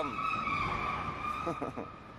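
A steady high-pitched squeal that slides slightly lower in pitch and stops shortly before the end, with a few short spoken syllables over it.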